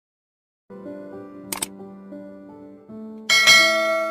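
Soft keyboard background music with held notes comes in under a second in. A single sharp mouse click sounds about a second and a half in, and a bright bell chime rings out near the end: the click-and-bell sound effect of a subscribe-button animation.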